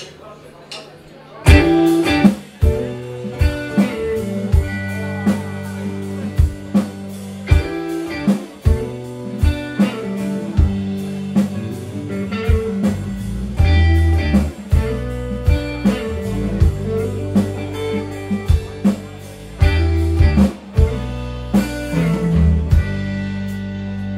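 Live blues band kicking in together about a second and a half in, after a few soft evenly spaced ticks: electric guitar, bass, keyboard and a drum kit playing a steady beat.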